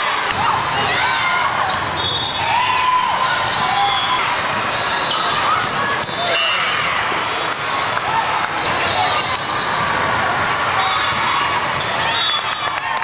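Indoor volleyball being played: girls' voices shouting calls on court and sharp slaps of the ball being hit, over the continuous hum of voices in a busy tournament hall.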